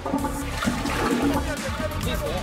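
A toilet flushing as its cistern lever is pressed, water rushing suddenly into the bowl, with background music underneath.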